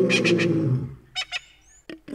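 Wild animal calls: a long, deep call falling slowly in pitch, then two short calls and a brief high chirp near the end.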